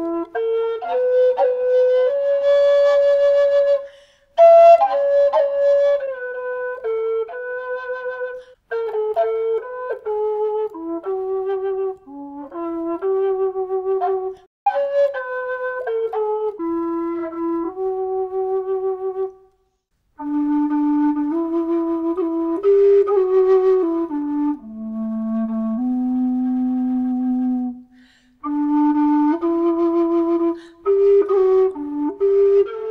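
A bamboo Labu bass B whistle playing a slow melody of held notes, with short pauses for breath. After a brief silence about two-thirds of the way in, a carbon-fibre Carbony bass A whistle takes up the tune, dipping to its deepest notes shortly after.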